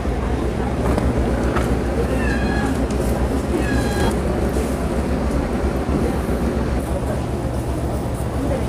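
Outdoor street-market background: a steady low rumble under distant voices, with two short high-pitched cries about a second apart, between two and four seconds in.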